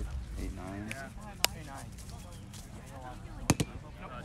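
Sharp smacks of a roundnet ball being hit and bouncing off the net: one about a second and a half in and a quick pair about three and a half seconds in, with players' voices in the background.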